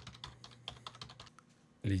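Typing on a computer keyboard: a quick run of keystrokes that stops about a second and a half in.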